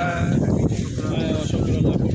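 Several men's voices overlapping, murmuring the close of a group prayer.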